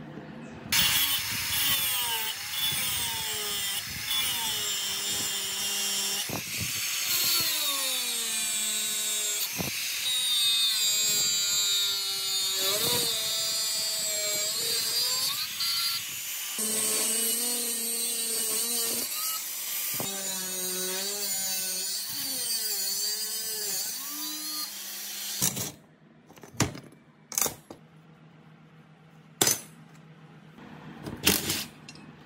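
Electric angle grinder with a sanding disc working rusty plow steel. Its motor pitch repeatedly drops and recovers as the disc is pressed into the metal and eased off. It stops near the end, leaving a few light metallic clinks.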